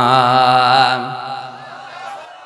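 A man's voice chanting Quranic recitation in melodic style, holding a long drawn-out note with a wavering pitch. The note ends about a second in and fades away in an echoing tail.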